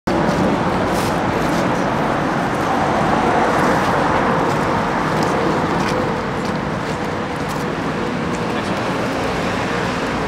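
Steady road traffic noise with people's voices mixed in.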